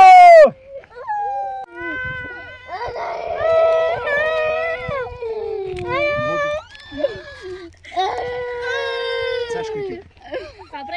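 A child crying and wailing in distress in long, wavering cries, starting with a very loud shrill cry that falls away in the first half-second.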